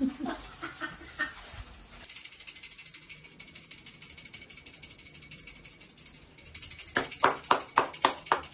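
A puja hand bell rung continuously during aarti: a steady, high, rattling ring that starts suddenly about two seconds in. From about seven seconds in it is joined by rhythmic hand clapping, about three to four claps a second.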